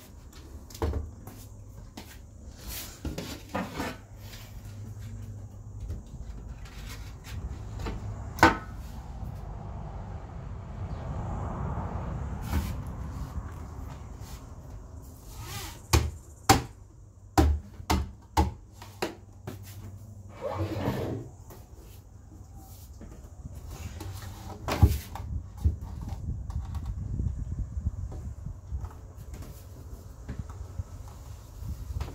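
Handling knocks and sharp clicks as a mesh grille cover is fitted and pressed onto a particleboard speaker cabinet. A single loud click comes about eight seconds in, a quick run of about six clicks follows around the middle, and one more loud click comes near the end.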